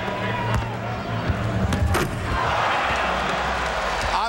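Basketball dribbled on a hardwood court, then a dunk slamming through the rim about two seconds in. An arena crowd cheers after it.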